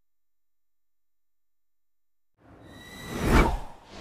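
Silence, then a single whoosh sound effect swells in about two and a half seconds in, peaks near the end and fades out.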